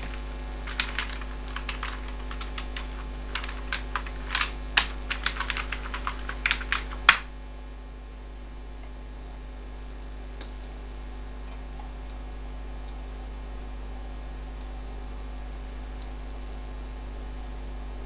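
Typing on a computer keyboard: a quick run of keystrokes for about six seconds, ending in one louder key press (the Enter key running the command) about seven seconds in. A steady electrical mains hum sits under it and carries on alone afterwards.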